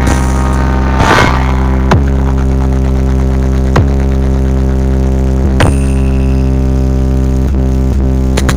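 Electronic dance remix played very loud through a wall of RCF DJ speaker boxes: a deep bass note held steady throughout, with a few sharp hits about one, two, four and five and a half seconds in.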